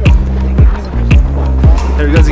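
Background music with a steady electronic beat: a deep kick drum about twice a second over a sustained bass line.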